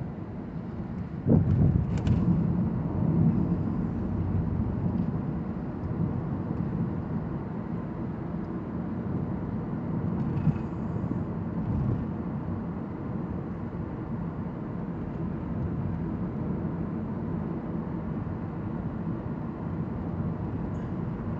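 Road and tyre noise in the cabin of a 2014 Toyota Prius V cruising at about 42 mph: a steady low rumble that gets louder about a second in, with a few faint ticks.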